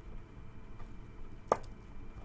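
Tarot cards being picked up off the table, faint handling, then a single sharp tap about one and a half seconds in as the cards are gathered into a deck.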